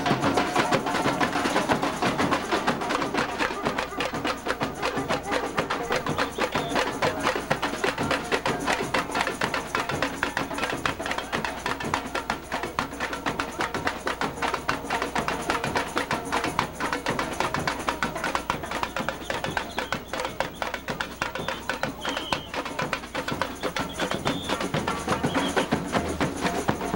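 A samba school drum section (bateria) playing a fast, unbroken samba rhythm, with drums and tamborims struck with sticks.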